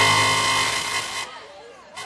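A steady electronic buzzer tone, held on one pitch, that cuts off just over a second in, leaving faint voices.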